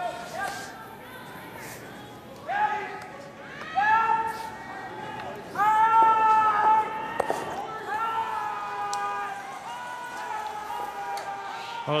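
Curlers shouting long, drawn-out sweeping calls on the ice, about five held high-pitched shouts as the stone travels down the sheet; the loudest comes about halfway through.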